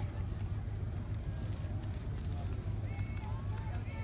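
Murmur of people talking in an outdoor crowd, over a steady low hum. Voices become clearer near the end.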